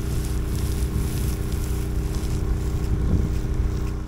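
Honda WT40X trash pump's GX390 engine running steadily at a distance while it pumps pond water to the sprinkler, with wind buffeting the microphone.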